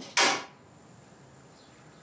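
A short, sharp rush of breath close to the mouth, from a person holding a cup of hot water, just after the start. Quiet room tone follows.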